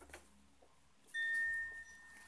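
A single chime struck once about a second in: one clear high ring that starts suddenly and fades slowly. A soft tap comes just before, near the start.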